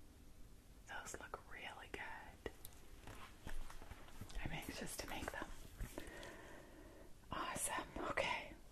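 A woman whispering softly, starting about a second in.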